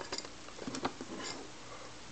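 A few light clicks and faint handling noise from a small metal-cased HF transceiver being gripped and turned, most of the clicks in the first second.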